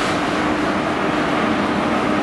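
Diesel power car of a Class 43 High Speed Train running close past a station platform, its engine giving a steady drone over the rumble of the train.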